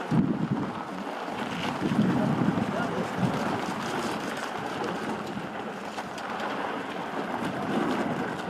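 Outdoor ambience of wind buffeting the microphone, with indistinct voices of people nearby.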